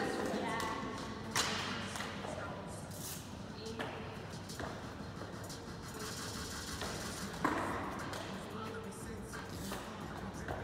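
Background music and indistinct voices in a gym hall, broken by two sharp thuds, one about a second and a half in and the other after about seven and a half seconds.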